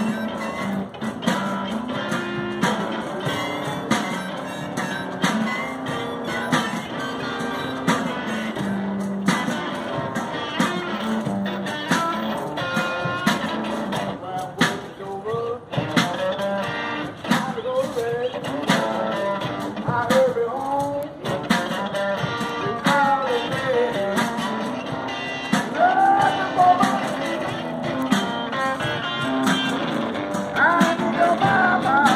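Electric guitar played in a steady run of plucked notes and chords, with a melody of bending notes over the second half.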